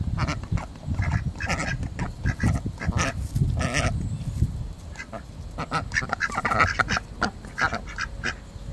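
Khaki Campbell ducks quacking close up, many short calls one after another, as they beg for food.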